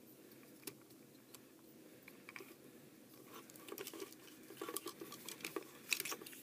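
Hard plastic Transformers Beast Hunters Megatron action figure being handled, its parts giving faint clicks and small rattles: a few single clicks at first, then a busier run of clicks in the second half.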